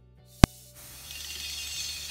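A single sharp click about half a second in, then onions and spices frying in oil in a nonstick kadai, a hiss that builds steadily as pepper powder goes into the pan.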